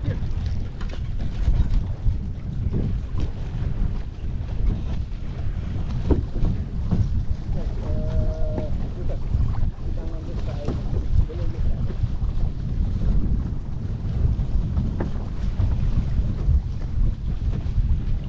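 Wind buffeting the microphone in a gusty, uneven low rumble, with water rushing and splashing along the hulls of a small sailing catamaran under way.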